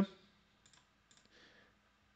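A few faint computer mouse clicks, scattered between half a second and a second and a half in.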